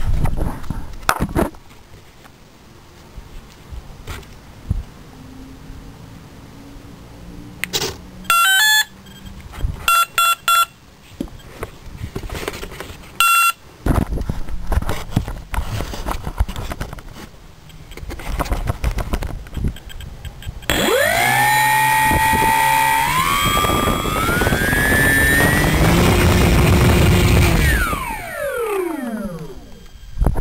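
Brushless outrunner motor (Turnigy SK 35-42) on a 60 A ESC: the ESC first sounds a quick rising run of arming beeps, then three short beeps and one more, then the motor spins a 9x6 APC prop up in steps to full throttle, a loud rising whine that holds for a few seconds and then winds down. This is a static wattmeter test, drawing about 19 amps and 230 watts at full throttle on a 20C 3S battery.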